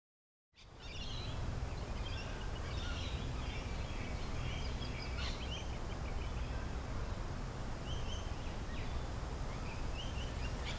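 Birds chirping over a steady low rumble of outdoor ambience, fading in just after the start.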